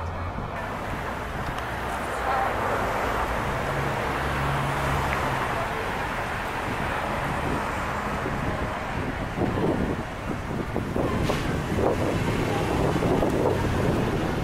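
Wind blowing across the microphone: a steady rushing noise with low rumbling gusts, choppier in the last few seconds, with one sharp click late on.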